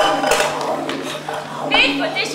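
Several voices talking over one another at once, with a steady low hum beneath.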